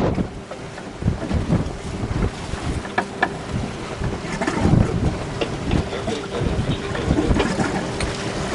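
Wind buffeting the microphone on a boat at sea, in uneven gusts, over a faint steady boat-engine hum and the slosh of choppy water.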